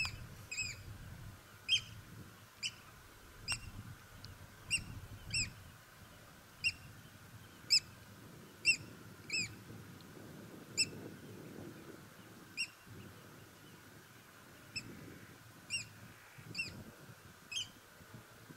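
A bird calling repeatedly: short, sharp, high calls about once a second, some in quick pairs.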